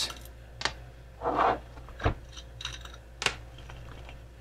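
Metal two-part soft-plastic bait injection mold being handled and opened on a plastic cutting board: scattered clicks and knocks of metal, with a short scrape about a second and a half in and the sharpest knock near the end.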